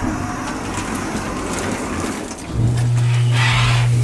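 Hydraulic elevator: the cab doors slide shut with a rumbling rattle. About two and a half seconds in, the hydraulic pump motor starts with a loud, steady low hum as the car begins to rise.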